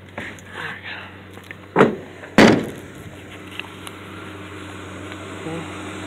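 Two heavy knocks about half a second apart, the second the louder, then a steady low hum.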